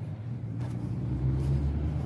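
A road vehicle's engine running as it passes by: a steady low rumble that grows slightly louder over the two seconds.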